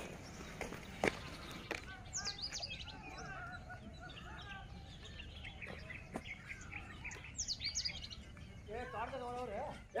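Birds chirping and calling, many short high chirps, over faint outdoor background noise, with a sharp click about a second in. A person's voice starts up near the end.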